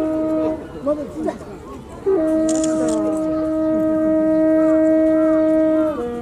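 Natural horn sounding the deer-calling signal that draws Nara's sika deer in. A held note stops about half a second in; after a pause, a second note is held for nearly four seconds.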